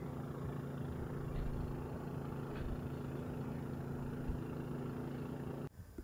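An engine idling steadily, a low even hum that cuts off suddenly near the end.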